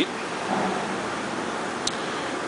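Steady fan-like background hiss, with a faint low hum coming in about half a second in and a single sharp click near the end.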